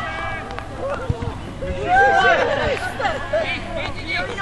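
Football players calling and shouting to one another across the pitch, several raised voices overlapping, with a single dull thud about a second in.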